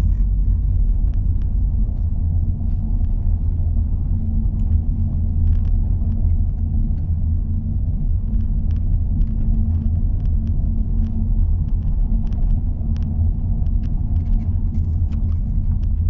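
Steady low rumble of road and running gear heard inside the cabin of a 2021 Audi A4 Avant driving along, with faint light clicks scattered through it.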